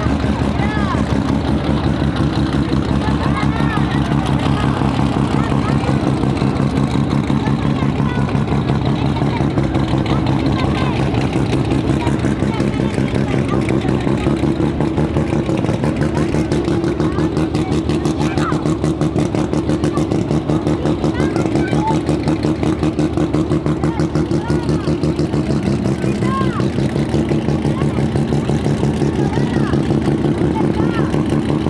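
Drag racing car's engine idling loudly and steadily, with a choppy, evenly pulsing rhythm.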